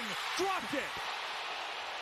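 Steady stadium crowd noise on a football broadcast, with a commentator's voice faint underneath in the first second.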